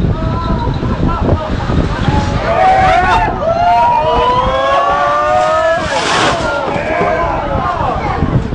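Several people exclaiming and shouting over one another, some in long drawn-out cries that rise and fall in pitch, over a steady low rumble of wind and a moving vehicle.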